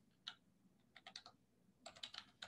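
Near silence broken by a few faint, short clicks, a single one early and a quick run of four around the middle, like keys tapped on a computer keyboard.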